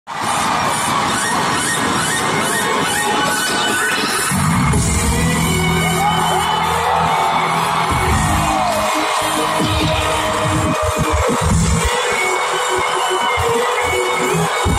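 Loud electronic concert music over an arena sound system, recorded from the audience, with a heavy bass coming in about four seconds in and breaking into choppy hits in the second half.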